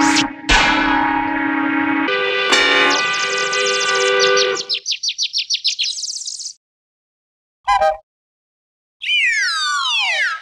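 Electronically distorted, effects-processed audio: sustained pitched tones break into a rapid stutter about halfway through, then cut out. A short blip follows, then a stack of tones sweeps downward in pitch near the end.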